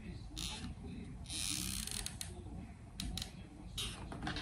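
Quiet craft-handling noises while gluing foil letters with a hot glue gun: a couple of short rustles, the longer one about a second and a half in, and a few light clicks.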